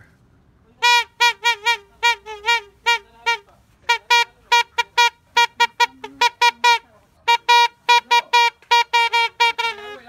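Plastic toy party horn blown in quick short toots, all on one note, in three runs of rapid blasts separated by brief pauses.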